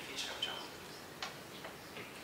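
A few scattered clicks of laptop keys being pressed, spaced irregularly over two seconds.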